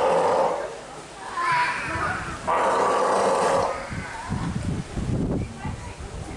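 Steller sea lions calling: a short, loud, hoarse call right at the start and a longer one about two and a half seconds in, followed near the end by lower, pulsing grunts.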